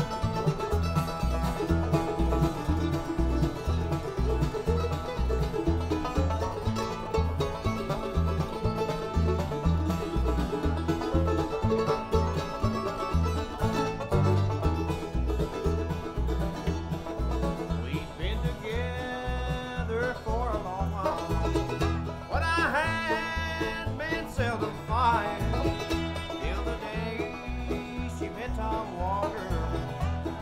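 Bluegrass band playing live: banjo, mandolin and acoustic guitar over an upright bass pulsing on the beat. About eighteen seconds in, a sliding, wavering melody line comes in on top.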